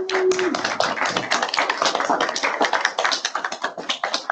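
A small group of people applauding, a dense patter of hand claps that thins out near the end.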